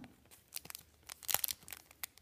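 Clear cellophane wrapper crinkling and crackling in the hands as the card sealed inside it is handled and turned over, in a run of irregular sharp crackles.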